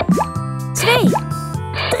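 Two cartoon-like electronic bloops, rising and falling in pitch, from the pump of a VTech Scoop & Learn toy ice-cream cart as it is pressed, over cheerful children's music.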